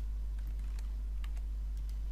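Scattered light clicks from a computer keyboard and mouse, about seven in two seconds, some in quick pairs, over a steady low electrical hum.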